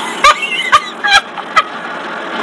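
A woman laughing in about four short, sharp bursts, roughly half a second apart.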